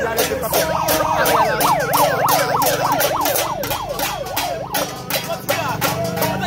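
A handheld megaphone's siren yelping, its pitch sweeping rapidly up and down about three to four times a second and fading after about four seconds, over a hand drum beaten steadily with a stick.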